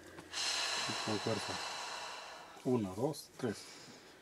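A woman's long forceful breath out as she pulls hard on a rooster's legs to break its neck, fading over about two seconds, followed by a few short low grunt-like vocal sounds.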